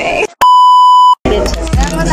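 An edited-in bleep: a single loud, steady 1 kHz tone about three quarters of a second long. It starts and stops abruptly, with the sound cut out just before and after it, the mark of a censor bleep over a word. Talk resumes after it.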